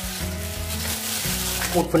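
Shredded red cabbage and boiled duck breast being squeezed and tossed by a hand in a thin plastic glove in a stainless steel bowl: a soft, crackly rustling, over steady background music with held low notes.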